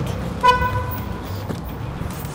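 A vehicle horn honks once, briefly, about half a second in, over a steady low rumble.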